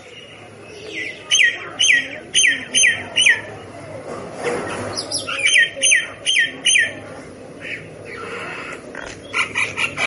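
Common myna calling: two runs of about five short downward-sliding notes, about two a second, with more calls near the end.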